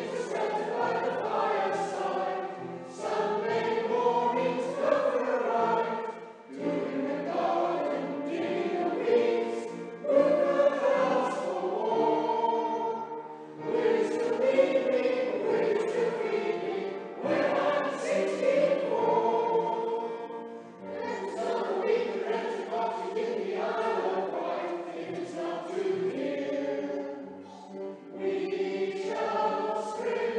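Amateur scratch choir singing, in phrases of a few seconds with short breaks for breath between them.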